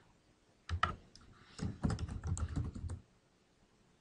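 Typing on a computer keyboard: a couple of clicks about a second in, then a quick run of keystrokes lasting over a second that stops about three seconds in.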